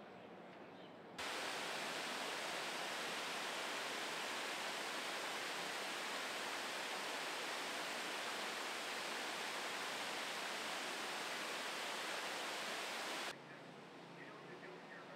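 Water pouring over a two-tiered stone waterfall into a pool: a steady rush that starts abruptly about a second in and cuts off abruptly just before the end.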